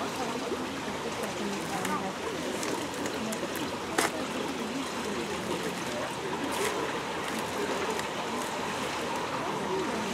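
Steady rush of running water under faint background voices, with one sharp crack about four seconds in and a softer one a little before seven seconds.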